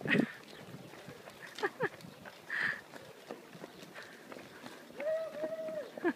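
Running footsteps on an asphalt road, with short voice sounds. Near the end a high voice holds one steady note for about a second.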